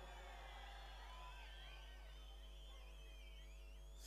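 Near silence in a pause between spoken sentences, with faint wavering high tones in the background.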